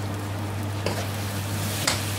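Chicken curry and rice sizzling in a metal pan as a metal spoon stirs them, with a light scrape of the spoon about a second in and again near the end, over a steady low hum.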